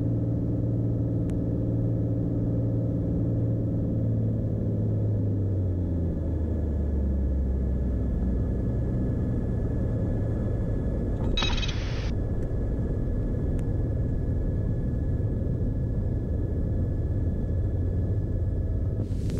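Beechcraft Bonanza's six-cylinder piston engine and propeller running steadily as the plane moves along the taxiway and runway, heard as a cabin rumble. The engine note drops about five seconds in and comes back up a few seconds later. A brief burst of hiss comes about eleven seconds in.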